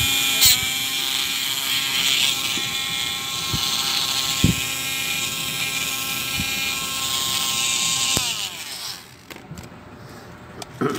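Small high-speed rotary engraving tool running with a steady high whine, then switched off about eight seconds in, its pitch falling as it spins down. A few light knocks sound over it.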